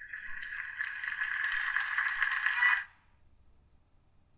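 Audio playing from an embedded SoundCloud player on the computer: a dense, rattling, hissy noise that cuts off suddenly near three seconds in, as the player is left for the SoundCloud page.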